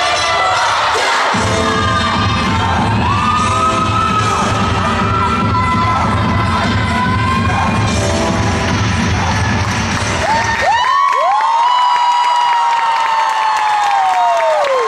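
Dance music with a heavy bass beat plays over a cheering crowd. About eleven seconds in the music cuts off and the crowd breaks into loud cheering with long high-pitched screams.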